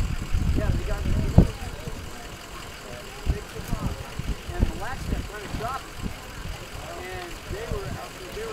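Distant, indistinct voices of several people calling out in short rising-and-falling calls. A low rumble and one sharp knock fill the first second and a half.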